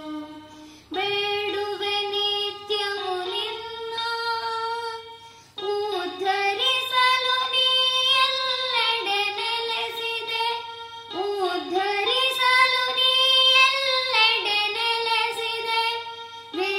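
A boy singing a devotional song to Ganapati, accompanied by a small toy electronic keyboard. The sung phrases break off briefly about a second in and again about five seconds later.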